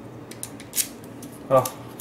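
Key sliding into a Mul-T-Lock MT5 lock cylinder: a few light metal clicks, then one short metallic scrape about three-quarters of a second in.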